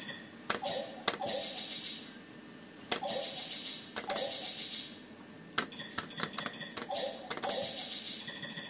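Buttons on a video poker fruit machine clicked over and over, several times followed by the machine's short electronic jingle as a new hand of cards is dealt.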